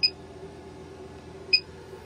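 Power inverter's overload alarm giving two short, high-pitched beeps about a second and a half apart, over a steady low hum. The inverter is beeping because it is loaded past its current rating, drawing about 148 A from the battery.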